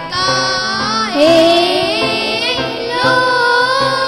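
A girl and a boy singing a Sufi devotional song together over a harmonium, the voices sliding between held notes over the harmonium's steady drone.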